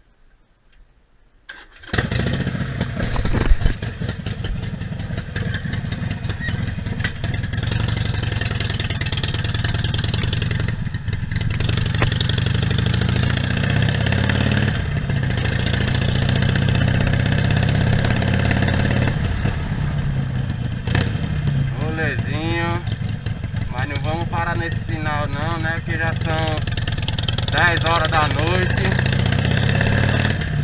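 Harley-Davidson Iron 1200's air-cooled V-twin engine running steadily as the motorcycle is ridden, with a steady rushing noise over it. It comes in suddenly about two seconds in, after a quiet start.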